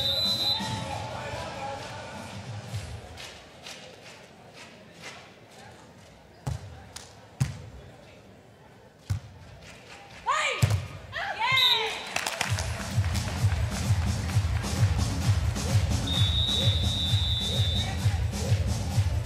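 Beach volleyball rally in an arena. Music fades out, then the volleyball is hit a few times with sharp slaps, followed by short shouts. Dance music with a steady beat starts about two-thirds of the way in as the point ends.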